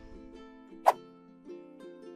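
Soft background music of held, plucked-string-like notes, with a single sharp pop a little under a second in.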